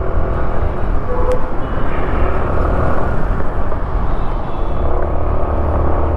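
Wind rushing over the microphone and a scooter's engine and tyres running steadily while riding through town traffic, with a brief faint higher note about a second in.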